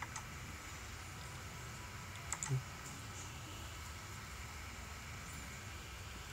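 A few computer mouse clicks over faint steady room noise: one right at the start and a short pair about two and a half seconds in.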